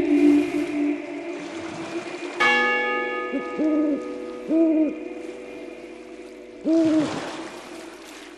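A sustained choral chord dies away, then a church bell is struck once about two seconds in and rings on, slowly fading. Over the bell, an owl hoots several times, each hoot rising and falling in pitch.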